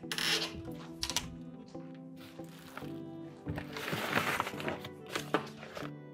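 Soft background music of sustained tones, over rustling, crinkling and knocks as items are pulled about on wooden wardrobe shelves. The longest stretch of rustling comes a little after halfway, and a sharp knock follows near the end.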